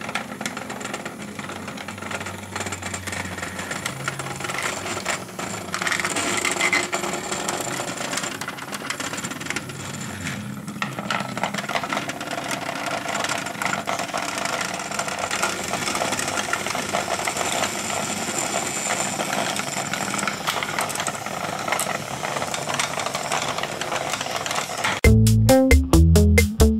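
Hexbug Nano v2 micro robots buzzing on their vibration motors, their plastic bodies and legs rattling steadily as they skitter along the plastic habitat track. Music starts loudly near the end.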